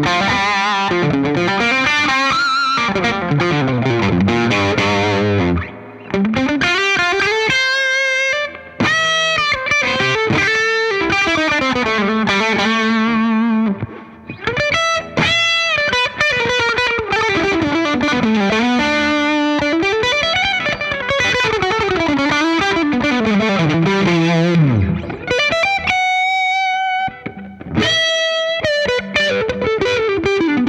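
2008 Gibson Les Paul Standard Plus electric guitar played through a Fender '65 Reissue Twin Reverb amp with a driven tone: a lead solo of string bends and quick runs. It breaks off briefly between phrases about six seconds in, near the middle, and again near the end.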